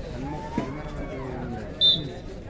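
A referee's whistle gives one short, high-pitched blast near the end, over the chatter of players and spectators.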